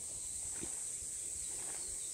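A steady, high-pitched drone of insects in the summer vegetation, unbroken through the moment.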